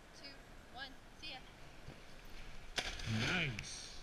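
Faint, short bits of voice, then a sharp click and a man's brief vocal sound, rising then falling in pitch, about three seconds in.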